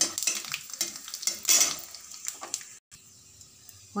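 Whole spices and bay leaves sizzling in hot oil in a metal kadai, with a metal spatula scraping and knocking against the pan as they are stirred. The sound cuts off suddenly about three-quarters of the way through, leaving only a low hum.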